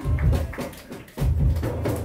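Live electronic music with drums: two deep bass-drum hits with a long booming low end, one at the start and another just over a second in, with clattering percussion over them.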